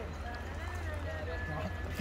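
Faint background voices of people talking, over a steady low rumble.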